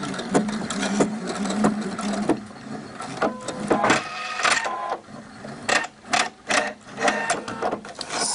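Electric domestic sewing machine stitching through tulle and elastic to make a small securing tack: a steady run for about the first two and a half seconds, then several short start-stop bursts of stitching.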